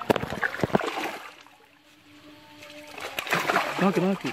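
Splashing in shallow stream water: a loud burst of splashes in the first second, a short lull, then more splashing from about three seconds in.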